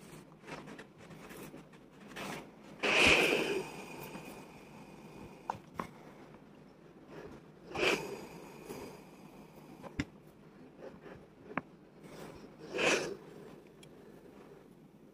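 Rowenta 2500 W steam iron being worked over clothes on an ironing board: three short bursts of hissing and rustling about five seconds apart, with soft sliding and a few sharp clicks between them.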